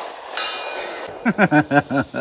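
The echo of a 9mm pistol shot dies away, with a faint high ring from about a third of a second in that lasts most of a second, fitting a bullet striking a distant steel target. In the second half a man laughs in short bursts.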